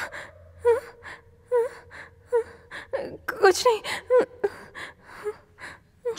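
A frightened woman gasping and whimpering in quick, panicky breaths, with a louder run of whimpering cries about halfway through.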